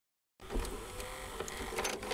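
Retro video-tape sound effect: after silence, a hissing, whirring noise with scattered clicks starts abruptly about half a second in, as of a tape deck starting playback into static.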